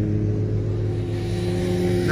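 Volvo V70 D4 diesel engine idling steadily.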